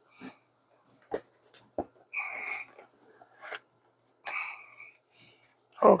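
A cardboard tablet box being opened by hand. There are a few sharp taps, then two stretches of paper-and-cardboard scraping and rustling, about two seconds in and again after four seconds, as the tear tabs are pulled and the lid comes off.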